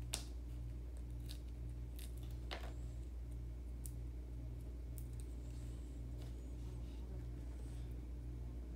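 Light clicks and rustles of small paper and cardboard craft-kit pieces being handled, the sharpest click just after the start, over a steady low hum that pulses about twice a second.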